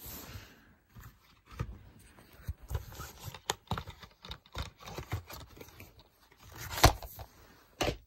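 Plastic DVD case and discs being handled: scattered light clicks and scrapes, with one louder click about seven seconds in.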